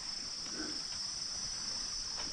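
Steady high-pitched drone of an insect chorus in tropical woodland, holding one even pitch without a break.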